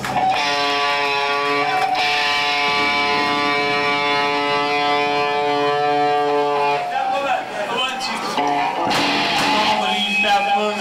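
Live rock band with a distorted electric guitar holding one ringing chord for about six and a half seconds. The band then breaks into looser strummed playing near the end.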